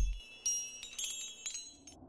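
Sparkling chime tinkles of a logo sound effect: several light, high-pitched strikes, each ringing briefly. The tail of a deep low boom dies away at the very start.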